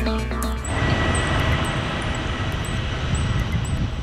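Background music ends about half a second in. After it comes the steady noise of a jet aircraft running on an airport apron: a low rumble and rushing hiss with a thin, steady high whine.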